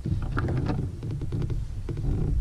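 Spinning reel clicking as a hooked fish is reeled in, a run of small sharp clicks over a low rumble of wind on the microphone.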